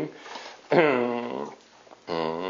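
A man's voice holding one long hesitation sound, an 'uhhh', starting under a second in and trailing off with a slight fall in pitch.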